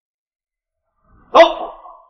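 A dog barks once, loudly, about a second and a half in.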